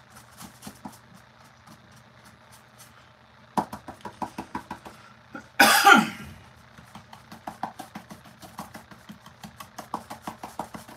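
A paintbrush dabbed quickly against a papier-mâché sculpture, stippling on paint in soft taps several a second from about a third of the way in. A short loud cough about halfway through, over a steady low hum.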